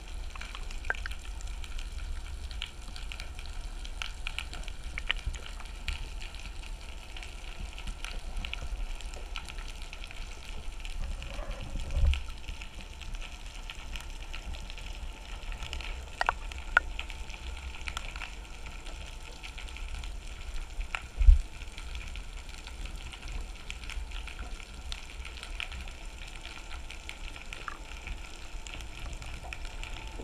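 Underwater ambience picked up by a submerged camera under a boat: a steady low rumble with scattered crackles and clicks. There are two dull thumps, one about twelve seconds in and a louder one about twenty-one seconds in.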